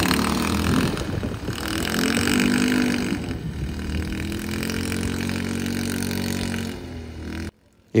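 Quad bike (ATV) engine running as it rides over sand. Its revs rise and fall about two seconds in, then settle to a steadier, lower note before the sound cuts off abruptly near the end.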